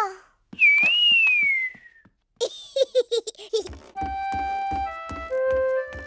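A single whistled note, about a second and a half long, rising slightly and then gliding down in pitch: a cartoon child's whistle. A few short vocal sounds follow. From about halfway through, gentle cartoon scene-change music plays, with keyboard notes over a soft low beat.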